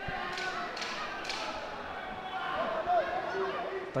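Fight-night ambience from inside an MMA cage: faint shouting voices from the corners and crowd, with a few short soft thuds of ground-and-pound punches in the first second or so.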